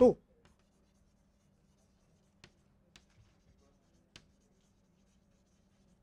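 Chalk writing on a blackboard: faint scratches with a few sharp taps about two and a half, three and four seconds in, over a faint steady hum.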